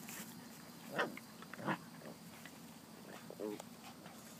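Eight-week-old puppies making a few short vocal sounds as they play, mixed with a woman's brief exclamations of "oh". The sounds are short, loud and separate, coming about a second in, again just after and once more near the end.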